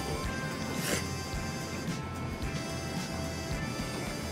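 Background music, with a loud slurp of thick ramen noodles being sucked up about a second in.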